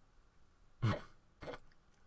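A person clearing their throat: two short bursts about half a second apart, the first louder, over quiet room tone.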